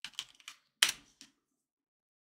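Computer keyboard keystrokes: about five quick, uneven key presses, the loudest a little under a second in.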